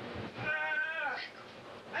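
A cat meowing once: a single drawn-out meow, steady and then falling in pitch at the end.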